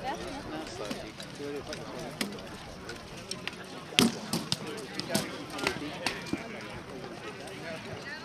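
Onlookers talking among themselves, with several sharp knocks over a few seconds in the middle, the loudest about halfway through.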